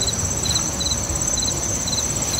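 Crickets chirping in short three-pulse chirps about twice a second, over a steady high-pitched insect trill.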